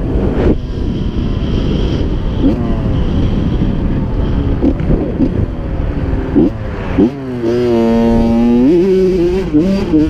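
Honda CR85 two-stroke dirt bike engine running under way, with wind rushing over the helmet-camera microphone. About seven seconds in the engine note rises and holds a steady high pitch, then wavers up and down near the end.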